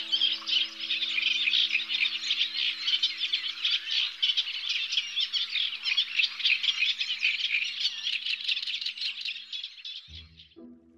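Many birds chirping and chattering at once in a dense, continuous chorus, over a few steady low tones that fade out near the end.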